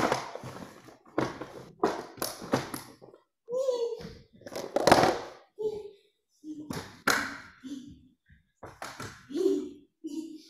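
Indistinct voices, some of them children's, mixed with scattered sharp taps and knocks.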